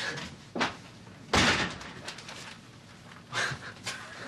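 A door shutting with a thud about a second and a half in, the loudest sound, with a few fainter knocks earlier and near the end.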